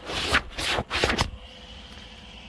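Three short scraping, rustling bursts in the first second and a half, then a quieter steady low hum.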